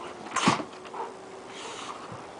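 Two dogs play-fighting, a flat-coated retriever and a shepherd/retriever/pit mix, with one short, loud vocal outburst from a dog about half a second in, then softer sounds.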